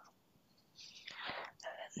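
Soft whispered speech: a short pause, then a whispered word or two about a second in.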